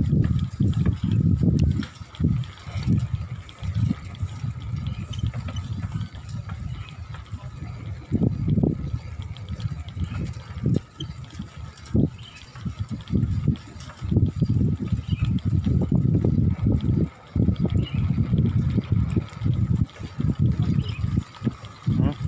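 Wind buffeting the microphone of a camera moving with a bicycle, a low irregular rumble that rises and falls in gusts, under a faint steady whine.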